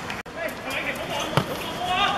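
A football struck on a hard court, with one sharp thud about one and a half seconds in and smaller knocks before it. Players call out around it, and the sound drops out briefly near the start.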